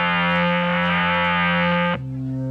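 Live band holding one sustained chord, with electric guitar through effects over keyboard and horns. Right at the end it moves to a different, slightly quieter held chord.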